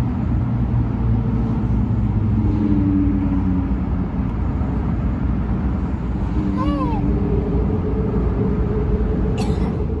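A boat's engine running steadily underway, a low, even hum. About seven seconds in, a short falling tone sounds over it.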